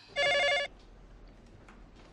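Desk telephone ringing once, a short electronic trill lasting about half a second.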